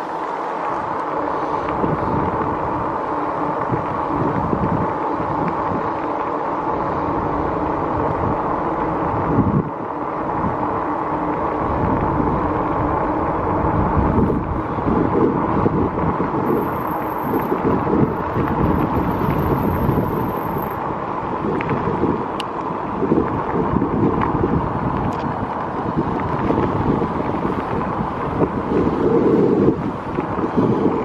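Wind buffeting the microphone of a camera on a moving electric bike, over a steady running noise from the bike on the road; the buffeting swells briefly near the end.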